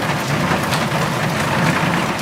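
Steady, heavy rain pouring down.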